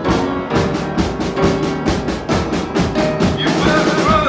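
Band music: a drum kit playing a fast, driving beat of about five strikes a second over sustained piano chords.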